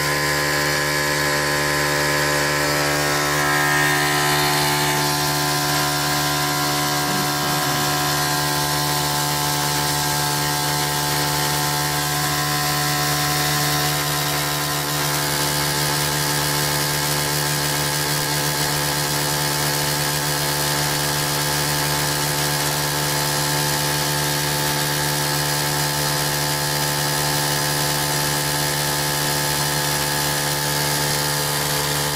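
Small electric motor spinning the magnet disc of a homemade coil generator at speed: a steady motor hum with a whine and whirr, running continuously.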